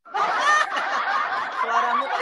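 Laughter, dense and continuous, starting right at the beginning.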